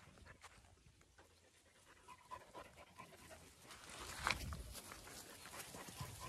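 Dogs panting, faint, with a run of brief sounds from about two seconds in and a single louder short sound about four seconds in.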